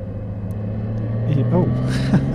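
Honda GL1800 Goldwing's flat-six engine running steadily under power through a bend, its note rising slightly.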